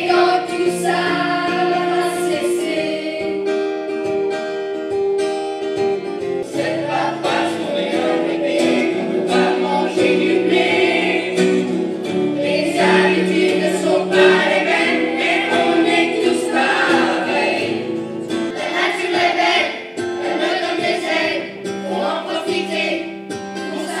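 A children's choir sings a French song with acoustic guitar accompaniment; about six seconds in, it switches to a different song.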